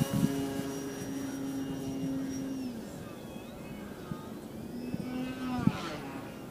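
Electric motor and propeller of a Durafly Tundra RC plane flying overhead: a steady buzzing tone that fades out about three seconds in and comes back briefly near the end.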